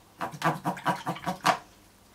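A person's voice in a quick run of short, even syllables, about five a second, with no clear words, stopping about one and a half seconds in.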